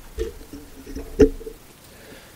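A pause with low handling noises: a soft thump near the start, faint low tones, and one sharp click a little after a second in.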